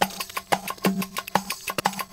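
A sampled music loop playing back from Ableton Live, pitch-transposed with warping on: a percussive groove of sharp, clicky hits about three to four times a second over a steady low tone.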